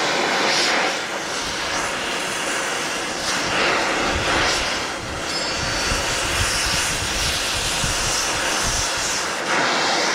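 Oxy-fuel cutting torch flame hissing steadily as it cuts through a steel bolt holding a stalk chopper blade. A lower rumble comes in about a second and a half in and drops away near the end.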